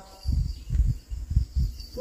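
A short pause in the singing, filled only by a series of irregular low thumps and rumble.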